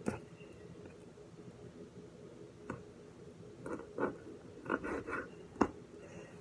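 A kitchen knife cutting raw chicken thigh on a wooden cutting board: a few sharp knocks of the blade on the board, one just after the start, one around three seconds in and one near the end, with softer cutting and handling sounds between.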